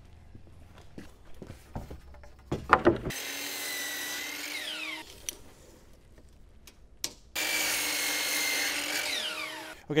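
DeWalt sliding compound miter saw cutting framing lumber, twice, about two seconds each. After each cut the motor winds down, falling in pitch.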